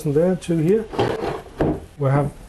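A small wooden pull-out table sliding on its runners, a short wooden scrape about a second in, with a man's voice just before it.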